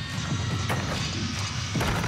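Floor-exercise music playing, and near the end a single heavy thud as a gymnast lands her piked full-in tumbling pass on the sprung floor.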